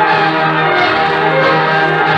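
Symphony orchestra played from a 78 rpm gramophone record: a loud, bright passage of sustained full-orchestra chords.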